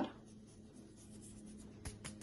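Quiet room tone with a faint steady low hum, and one light click near the end.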